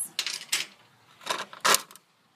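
A few short clattering knocks of small hard objects being handled. The last and loudest comes near the end.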